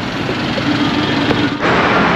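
Street traffic: vehicles driving past, with a steady engine tone for about a second, then a louder rushing noise from a little past halfway.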